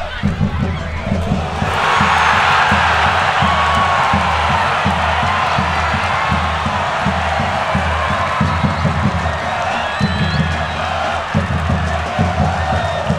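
Stadium crowd cheering a goal, swelling up about a second and a half in and holding, over a steady low drumbeat.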